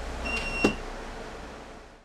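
A city bus's door warning signal: one steady high electronic beep lasting about half a second, with a single thump during it, over the low hum of the bus interior. The sound fades out near the end.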